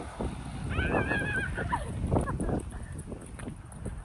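A woman's high-pitched laughter: a wavering squeal about a second in, then shorter bursts of laughing, over a steady low rumble.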